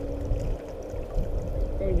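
Low rumble of water and movement around a kayak on a river, with a faint steady hum underneath; a man's voice starts near the end.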